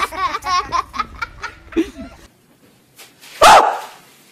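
A woman's high, wavering shrieks and laughter as she reacts to a scare. After a brief lull, there is one sudden, very loud short cry near the end.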